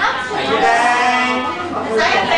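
A dog whining in one drawn-out, wavering cry about a second long, over people's chatter.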